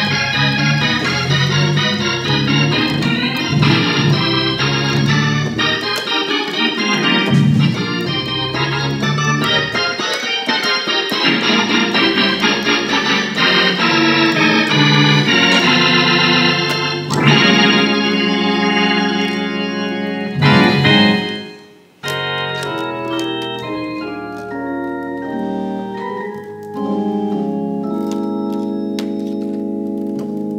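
Organ playing a gospel tune in full chords over a bass line. About halfway through it slows into long held chords, breaks off briefly, then sustains its last chords.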